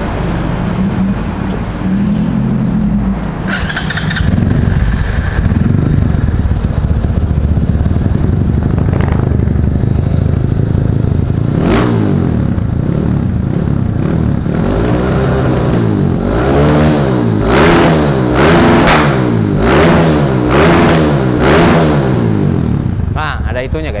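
Supermoto motorcycle engine running at idle, then revved in a series of about half a dozen quick blips, each rising and falling, roughly one a second. It is being revved to show its adjustable aftermarket CDI rev limiter.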